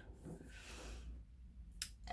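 Quiet room tone with a faint low hum, broken by one short, sharp click near the end.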